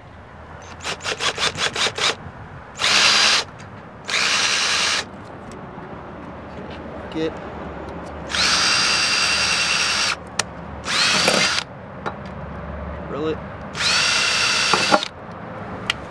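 Cordless drill running in five short bursts, each spinning up with a short rising whine, to mount a load resistor on the vehicle. A quick run of clicks comes about a second in, before the first burst.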